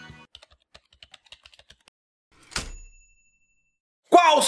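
Quick, light typing clicks, a dozen or more in about a second and a half. After a short pause comes a single bright ding that rings for about a second.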